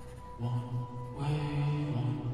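Indoor percussion ensemble opening its show with low, sustained droning notes that swell in about half a second in. A fuller, brighter swell follows about a second later.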